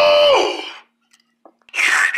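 A high-pitched voice calling out a long held "woo!" that rises, holds steady and then falls away, followed by a short pause.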